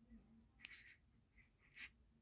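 Near silence, broken by two faint, brief scratchy rustles, one a little over half a second in and one near the end.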